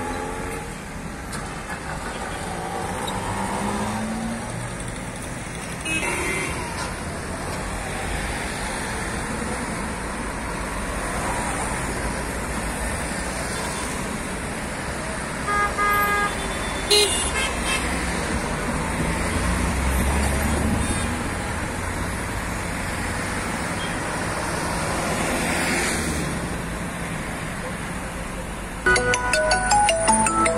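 Road traffic: cars driving past and queuing, with engine and tyre noise throughout and a car horn sounding briefly about halfway through. Music comes in near the end.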